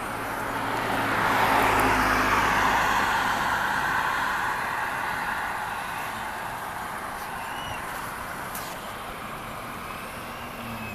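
A road vehicle driving past: the noise swells to its loudest about two seconds in, then fades away slowly.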